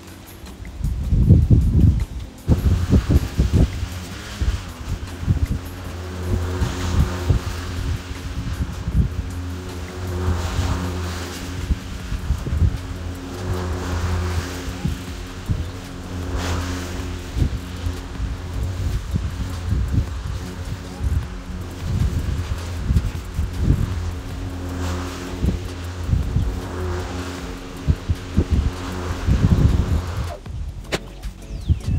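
Ryobi 2x18V ONE+ brushless self-propelled lawn mower starting about two seconds in after a few clunks, then running with a steady electric motor hum while its blade cuts grass, a rushing sound that swells every few seconds.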